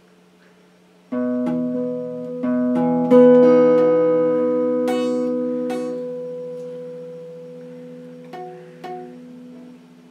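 Electric guitar chord picked one string at a time, five notes over about two seconds with the last the loudest, then left ringing and slowly fading, with two light plucks near the end. It is a B major chord shape being tried out.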